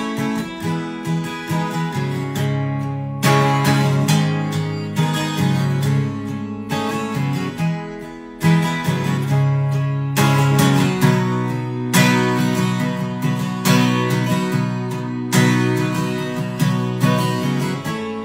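Guild 12-string acoustic guitar strummed in a steady rhythm, the instrumental intro to a song, with the chord changing every few seconds.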